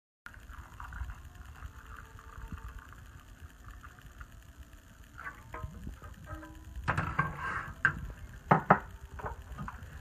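Hot chocolate poured from a pan into a ceramic mug, a steady liquid pour, followed by kitchen handling noise with a few sharp knocks near the end.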